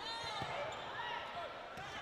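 Athletic shoes squeaking on an indoor court floor as players move during a volleyball rally: several short, sharp squeaks that slide in pitch, over a steady arena hubbub.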